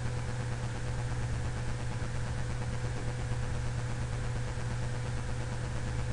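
Steady low hum with a faint higher steady tone over even background hiss, unchanging throughout.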